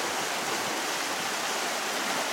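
Fast, strong river current rushing over a shallow rocky bed, a steady, even rush of water.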